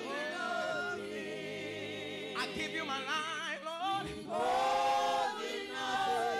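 Church congregation singing a worship song, the voices wavering in pitch and swelling louder about four seconds in.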